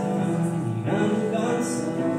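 A man singing a song in a live performance, accompanying himself on a Korg digital keyboard with piano sound. About a second in, the voice slides between notes.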